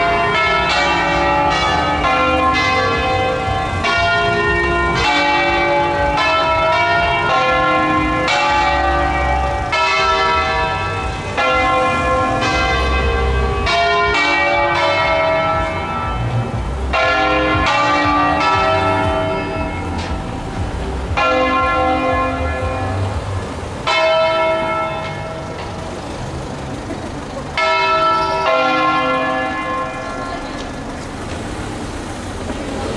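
Six church bells tuned in C (Do3), swung by hand and striking one after another in a changing melodic sequence, each stroke ringing on with long overtones. A quieter lull comes past the middle, then a fresh loud stroke near the end.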